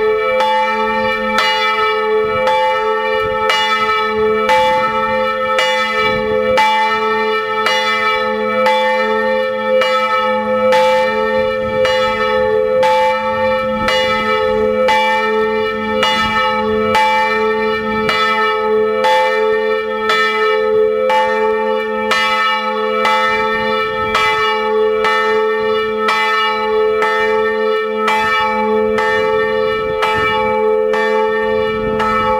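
A single church bell swinging in an open wooden bell tower, its clapper striking about once a second. Each stroke rings over a steady, lingering hum.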